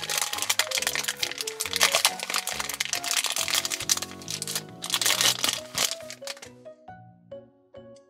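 Thin clear plastic bag crinkling as a small toy figure is unwrapped from it, over background music; the crinkling stops about six and a half seconds in, leaving the music.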